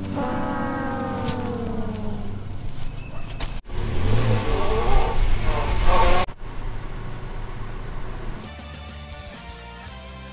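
Background music with a falling, pitch-dropping sound effect at the start, then a few seconds of car engine noise that cuts off suddenly just past the middle, leaving the music alone and quieter.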